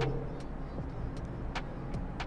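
Mechanical pencil scratching on paper in short shading strokes, with a few faint clicks, over a steady low hum.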